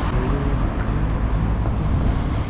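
Wind rumbling on the camera microphone while riding a bicycle along a town street, with traffic going by underneath.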